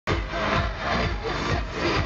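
Live pop concert heard from the audience: a loud dance-pop track with a steady, pulsing bass beat and a singer's amplified vocal through the arena PA, mixed with crowd noise.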